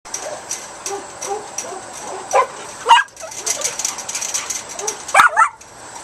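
Papillon barking: two sharp barks about two and a half seconds in and two more a little after five seconds, with softer whines and yips between them.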